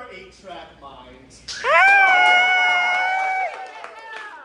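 A person's loud, high-pitched held vocal cry: it swoops up about a second and a half in, holds one steady note for about two seconds, and dips as it ends. Quieter voices come before it.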